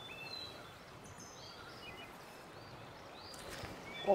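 Faint countryside ambience: a low steady hiss with scattered short bird chirps and whistles.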